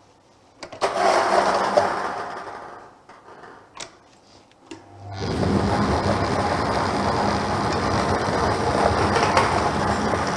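Lottery draw machine: the numbered balls drop from their loading tubes into the clear chambers about a second in, with a clatter that dies away. Just after five seconds the machine's mixer starts, with a steady hum under the rattle of balls churning in the chambers.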